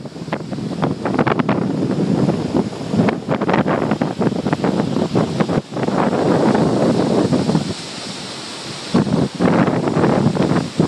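Ocean waves breaking and surf washing up the beach, loud and surging, with wind buffeting the microphone in gusts throughout.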